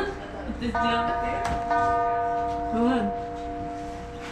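Two ringing bell-like notes, struck about a second apart, each sustaining over a steady background tone.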